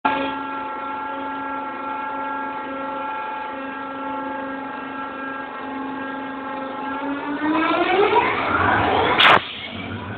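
Locomotive passing close by, giving a steady droning tone with many overtones. Over the last couple of seconds the tone rises in pitch and grows louder, then a sharp click and the sound drops away.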